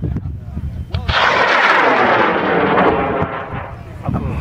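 High-power solid-fuel rocket motor igniting and lifting off: a loud rushing roar starts suddenly about a second in, holds for about two seconds, then fades as the rocket climbs away.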